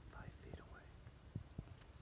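Hushed whispering close to a smartphone microphone, with low bumps from the phone being handled. Faint high arching notes come in the first second.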